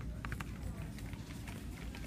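Footsteps in flip-flops on a hard store floor: a run of short sharp slaps a few tenths of a second apart over a steady low rumble of the handheld phone moving.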